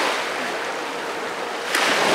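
Small lake waves washing onto a stony beach: one wash ebbing at the start and another swelling in near the end.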